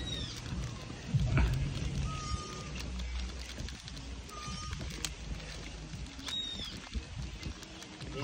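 Birds calling in the background: a short, level whistled note repeated every two to three seconds, and a higher arching note twice.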